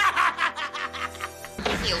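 The leprechaun's cackling laugh, a quick run of short ha-ha bursts, over background music. About a second and a half in, a louder, denser sound cuts in as the laugh ends.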